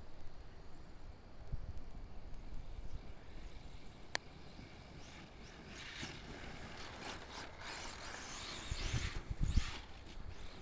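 HPI Savage XS Flux brushless electric RC mini monster truck driving across grass: a faint whir of motor and drivetrain that grows louder in the second half. A few low thumps come near the end.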